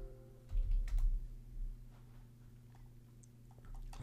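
A few scattered computer keyboard keystrokes and clicks, entering a value, over a steady low hum.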